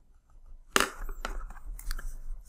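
A stylus tapping and scratching on a tablet screen as highlighter strokes are drawn: a few short sharp clicks, the loudest about three-quarters of a second in.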